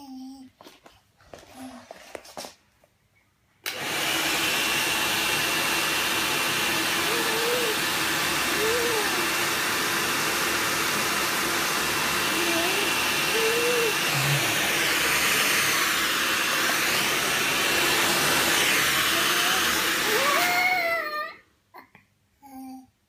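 Hand-held hair dryer blowing, starting suddenly about four seconds in and running steadily, a loud rush of air with a faint high whine, then cutting off about a second before the end.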